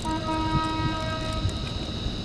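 A horn sounding one steady note with overtones for just under two seconds.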